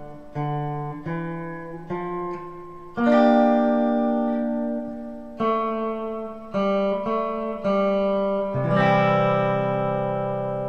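Les Paul Custom electric guitar picking three single notes, one at a time, then strumming a chord that rings on, with the pattern played twice. The notes start on the third fret of the A string.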